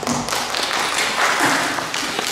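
Audience applauding, many hands clapping at once, right after the piano piece has ended.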